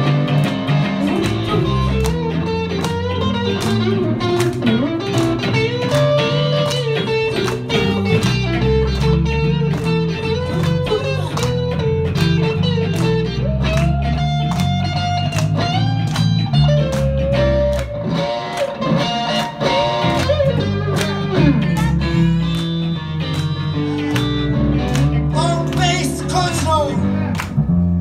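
Live band playing an instrumental passage led by electric guitar, with bass and a steady drum beat, the lead line bending up and down in pitch.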